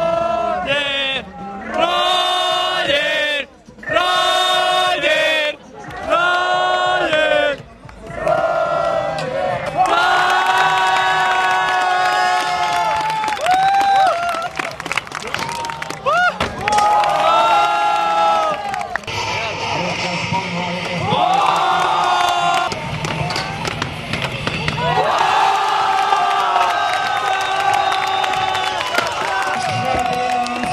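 A crowd of spectators chanting and singing loudly in held notes. Over the first several seconds the chant comes in short phrases of about a second with brief breaks, then runs more continuously with cheering mixed in.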